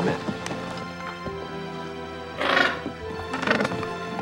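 Background music with sustained notes, and about two and a half seconds in a loud squawking penguin call, followed by a shorter squawk about a second later.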